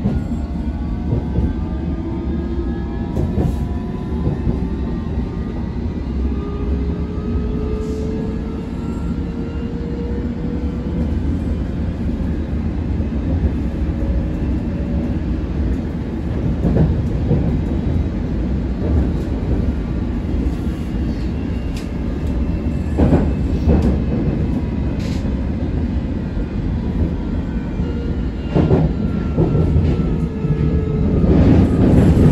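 London Underground Circle line train running through a tunnel, heard from inside the carriage: a steady low rumble, with a whine rising in pitch over the first half as it gathers speed. A few sharp knocks and clicks from the wheels on the track come in the second half.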